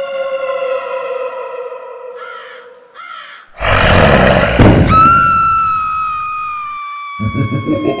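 Edited-in soundtrack effects. A long held tone sags slightly in pitch, then comes a loud noisy burst, then a high held tone slides slowly downward. Rhythmic music starts again near the end.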